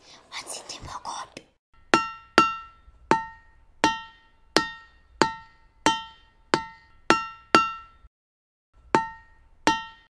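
A whispered voice fades out in the first second and a half. Then a plucked string instrument plays a slow run of single ringing notes, about one every two-thirds of a second, with a short pause near the end.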